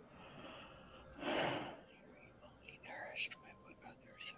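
A person's short, loud breath out into a microphone about a second in, then faint, indistinct murmuring.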